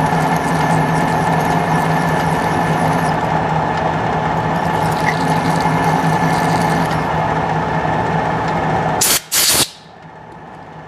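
A machine-driven twist drill cutting a clearance hole through a steel bar, with the motor and spindle running steadily. Near the end come two short, loud blasts of compressed air that clear the chips. After them the running noise drops away.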